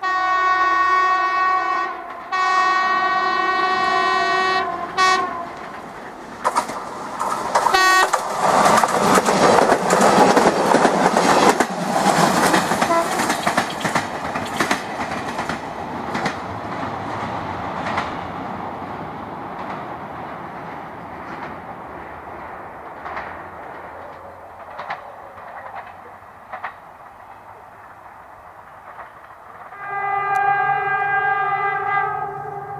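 TFC DH2 diesel railcar sounding its multi-tone horn in two long blasts, then two short toots. It then passes close by, rolling across a steel truss bridge: a loud rumble with wheels clicking over rail joints, fading as it goes away.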